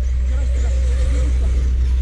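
Brushless electric RC off-road buggies racing on dirt: a faint wavering motor whine over a steady hiss, under a constant low rumble.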